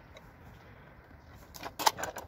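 Small metal drawers of a die-cast miniature toolbox being worked by hand: a quick cluster of sharp clicks and a knock near the end.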